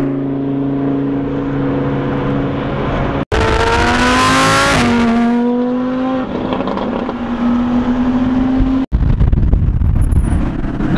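Sports car engine running at a steady cruise, heard from inside the car. After a brief gap about three seconds in, it revs up with rising pitch and a rush of wind noise, then settles back to a steady tone; another brief gap comes near the end.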